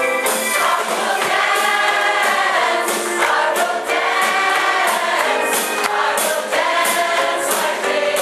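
Mixed choir of men and women singing an upbeat gospel song in harmony, with a drum kit keeping a steady beat.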